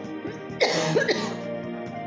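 A woman coughs twice, about half a second apart, over soft backing music.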